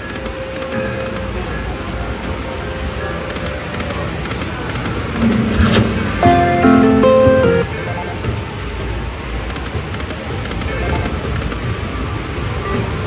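Pure Cash Dynasty Cash video slot machine playing its game sounds during free spins, over steady casino background noise. About five seconds in there is a sharp click, then a short chiming run of stepped notes lasting about two seconds as cash-value symbols land on the reels.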